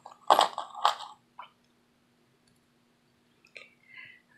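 Short clicks and rustles as a metal charm's clasp and chain are unclipped from a cardboard box journal, in the first second or so, then near silence with two faint clicks near the end.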